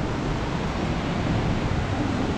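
Steady, even rush of falling water from a tall waterfall.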